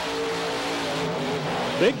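Monster truck engines running at full throttle in a side-by-side drag race, a loud, steady engine note. A commentator calls out "Bigfoot" at the very end.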